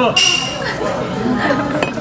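A sharp clink of metal tableware near the start, ringing briefly, among startled cries of "uwa!" and laughter.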